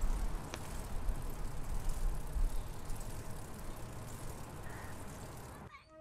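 A bicycle ridden along a paved path: a steady rush of tyres and wind with a low rumble and one brief click about half a second in. The noise cuts off suddenly near the end.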